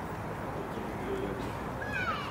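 Low, steady rumble of a Northern Class 156 Super Sprinter diesel unit running into the station, with a short high-pitched squeal that falls in pitch near the end.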